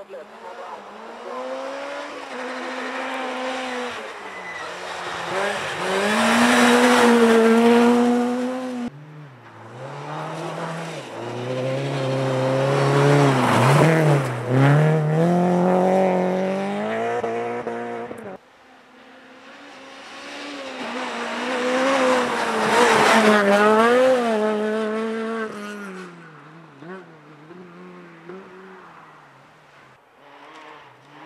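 Rally cars at full stage speed, heard one after another in three separate passes with abrupt breaks between them. Each engine is driven hard, its pitch rising and dropping through gear changes and lifts. Each pass is loudest as the car goes by close and then fades away.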